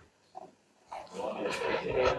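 A person's voice, low and grunt-like, getting louder from about a second in.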